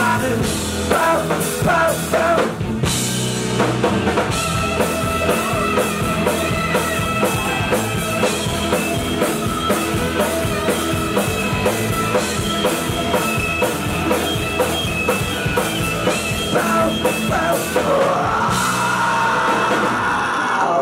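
Punk rock band playing live: a drum kit pounding out a fast, even beat under electric guitar and bass. Near the end the singer holds a rising scream.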